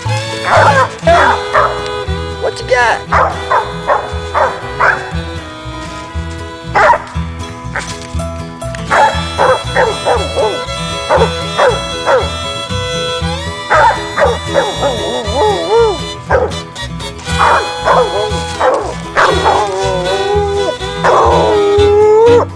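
A coon dog barking in repeated bouts at a tree, the treeing bark that signals she has game located up the tree. Background music with a fiddle and a steady beat plays throughout.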